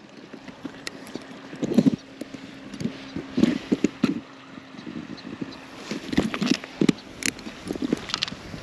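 Handling noise from unhooking a trout in a landing net with forceps: scattered small clicks, knocks and rustles close to the microphone, with a faint steady hum through the middle.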